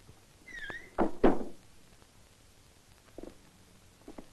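A wooden plank door creaks briefly, then bangs twice against its frame with two loud knocks of wood about a quarter second apart; a faint knock follows near the end.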